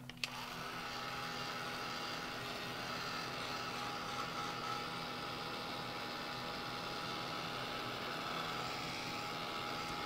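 Craft heat tool switched on just after the start and running steadily, its fan blowing hot air to dry wet gesso and matte medium.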